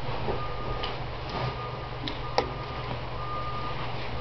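A faint beeping tone that sounds several times, about a second apart, over a steady low hum, with one sharp click a little past halfway.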